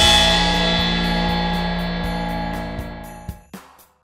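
Cartoon magic-power sound effect: a bright, sustained chord of many ringing tones that starts at full strength and fades away over about three and a half seconds, over a low background music bed.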